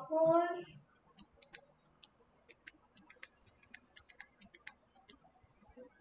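Typing on a computer keyboard: a run of irregular light key clicks, several a second, lasting about four seconds.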